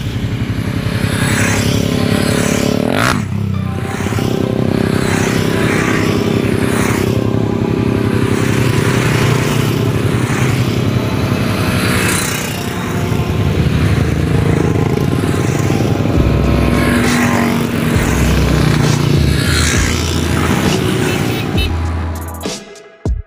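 A convoy of small motorcycles riding past one after another, their engines rising and falling in pitch as each bike goes by.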